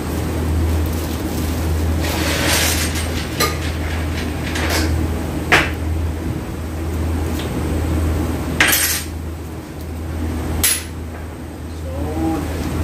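Metal transfer-case parts being picked up and set down on a steel workbench: about six irregular clanks and clinks, the loudest a little past halfway. A steady low hum runs underneath.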